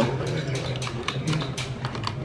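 Small, irregular metallic clicks and taps from the parts of a field-stripped HK MP5 submachine gun's roller-delayed bolt group being handled and worked by hand, over a steady low hum.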